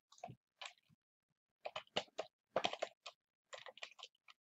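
Computer keyboard typing: a quick, irregular run of key clicks as a short word is typed.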